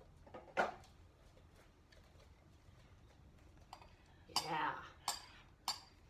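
A spoon knocking and scraping against a ceramic bowl as shredded cheese is scooped out: one sharp knock about half a second in, then several clinks in quick succession near the end.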